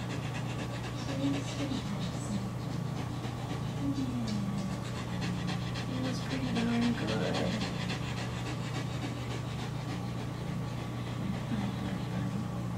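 A greyhound panting quickly and steadily from the effort of swimming during hydrotherapy, over a steady low hum.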